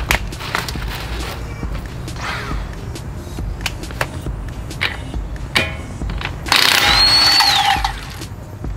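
Clicks and knocks of a socket and tools being handled, then a cordless impact wrench runs on a wheel's lug nut for about a second and a half near the end, its motor whine rising and then falling away.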